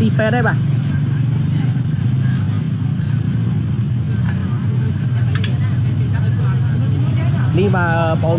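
A steady low rumble of motorcycle engines idling in the street, with voices at the start and near the end.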